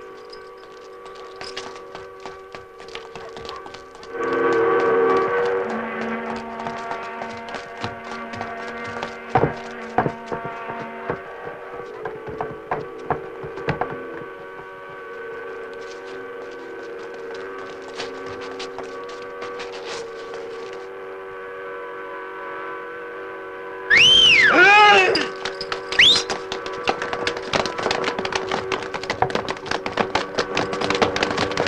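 Film soundtrack: a long steady chord of several held tones comes in about four seconds in, with crackle and scattered clicks throughout. Near the end there are loud cries that swoop up and down in pitch.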